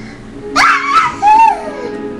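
A high-pitched squealing cry about half a second in that leaps up sharply and then slides down, followed by a shorter falling whine.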